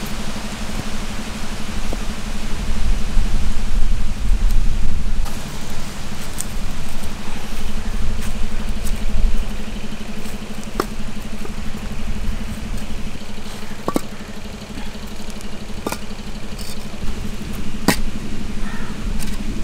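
A steady engine-like hum with a heavy low rumble. A few sharp knocks come as fired clay bricks are set down on the ground.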